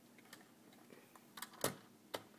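A few light plastic clicks and taps as HO-scale model freight cars are handled and set down, the sharpest about one and a half seconds in.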